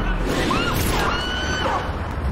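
Action film sound mix: a woman's high, held scream over a low rumble and crashing, with score music underneath.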